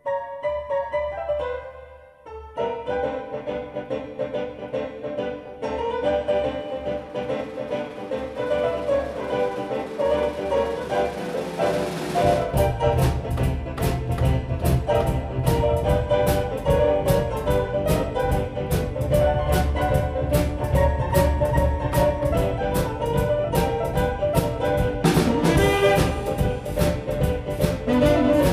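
Live art-rock band: a stage keyboard opens with sustained orchestral, brass-like chords that swell and build. About halfway through, the drum kit and bass come in with a steady beat under the chords.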